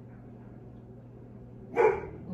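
A dog barking once, a single short, loud bark near the end.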